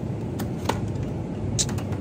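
Shopping cart rolling over a store's tile floor: a steady low rumble with a few light clicks and rattles, one about half a second in and a cluster near the end.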